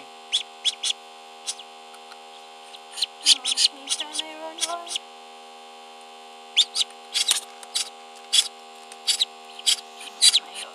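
Short, high-pitched peeps from a just-hatched duckling, coming in quick clusters through the first half and again near the end. Under them runs the incubator's steady electrical hum.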